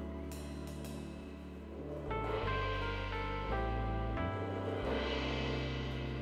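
Live band playing an instrumental passage: sustained keyboard chords that change every second or so over a steady electric bass line, with a cymbal wash about half a second in.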